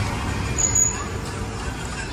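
Steady low rumble of street traffic, with a short high-pitched squeal a little over half a second in.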